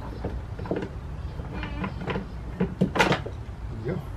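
Plastic knocks and rattles as a screwed-in plastic battery holder is unscrewed and worked loose from the battery well of a plastic Power Wheels ride-on toy. Scattered short clicks come throughout, with the loudest knock about three seconds in.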